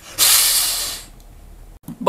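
A man hissing through bared teeth in imitation of a vampire's hiss: one hiss of about a second that starts sharply and fades away.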